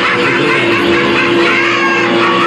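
Music playing over a venue's PA, with one long held low note through most of it.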